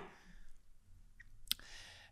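A quiet pause of room tone with one short, sharp click about one and a half seconds in.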